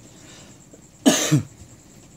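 A man coughs about a second in, a short double cough.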